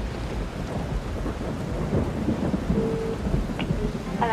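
Rain and thunder: a steady rush of rain over a continuous low rumble.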